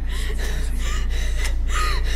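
A woman's short, sharp gasping breaths, several in quick succession, some with a brief voiced catch, over a low steady hum.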